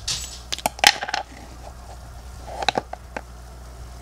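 Plastic lid of a TetraMin fish-flake tub being prised open: a quick cluster of sharp plastic clicks and crackles about half a second to a second in, then a few lighter clicks of the tub being handled near the end.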